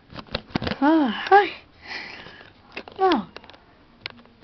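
A person's voice making short wordless sounds that fall in pitch, twice, with a sniff between them and a few light clicks at the start.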